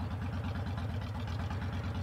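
2007 Honda VTX 1300S V-twin engine idling steadily while the motorcycle stands still.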